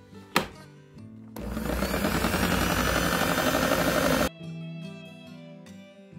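Electric stand mixer's motor running with its wire beaters churning thin cake batter, for about three seconds before it cuts off suddenly, after a single click about half a second in. This is the low-speed beat that blends the milk and oil into the whipped eggs and sugar. Soft background music underneath.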